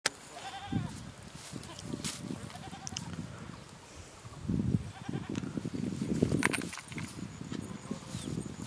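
A few short, high-pitched animal calls from livestock, heard about a second in, again near the middle, and once more later, over low rumbling noise.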